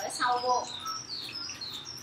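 Small birds chirping over and over in short, high notes, with a brief vocal sound from a person just after the start.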